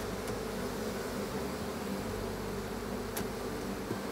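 Honey bees buzzing steadily around an open hive, with a light click about three seconds in.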